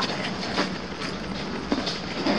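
A zipper being pulled shut around a soft fabric packing cube, a steady rasp with a short click near the end.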